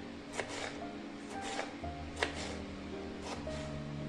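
Background music with steady held notes, over a kitchen knife slicing a tomato on a wooden cutting board. The blade makes several short, sharp taps against the board; the clearest comes about halfway through.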